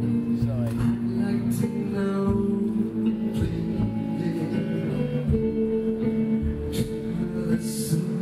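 Live music with guitar and sustained low notes, and a man singing into the microphone at times.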